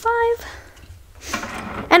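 Mostly a girl's voice: one short drawn-out word at the start, then a brief soft rustle a little before she speaks again.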